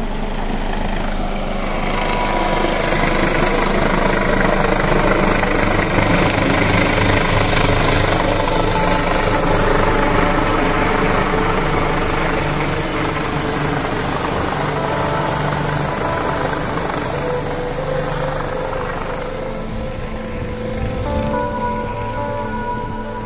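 An aircraft passing overhead: its engine noise swells over the first few seconds, is loudest midway, then slowly fades. Background music plays underneath.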